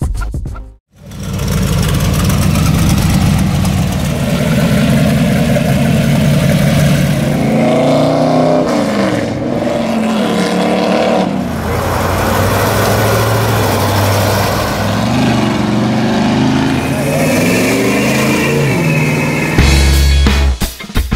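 Hot rod and classic car engines running loudly as the cars drive off, the revs rising and falling several times, about eight seconds in and again near fifteen seconds.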